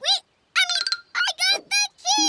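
A high-pitched cartoon child's voice making short, excited exclamations in several quick bursts.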